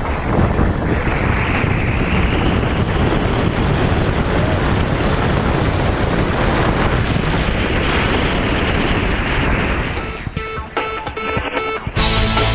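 Wind rushing over the camera microphone of a tandem skydiver descending under an open parachute, a steady, dense noise. About ten seconds in it drops away, and music comes in quietly.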